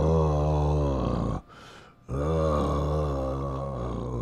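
A man's deep, drawn-out groans in a monster voice, two long groans with a short break about a second and a half in, the sound of a man in discomfort from an upset stomach.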